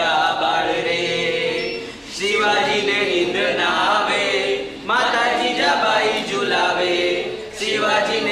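A group of voices singing together without accompaniment, in phrases of about two and a half seconds with brief breaks between them.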